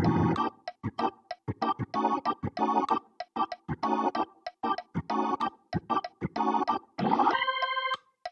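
Nord Stage 3 keyboard playing a Hammond B3-style drawbar organ sound: short, percussive chord stabs in a grooving rhythm, several a second. About seven seconds in, a quick glissando lands on a held chord.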